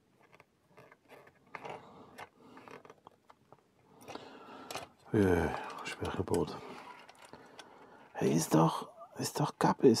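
Soft clicks and scrapes as plastic model-kit parts and thin wires are handled on a cutting mat, then a man's muttered voice that falls in pitch about five seconds in, and more muttering near the end.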